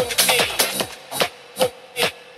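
Techno played by a DJ through a PA sound system: a steady four-on-the-floor kick beat that thins out about halfway through, as the bass drops out and leaves only a few sparse hits.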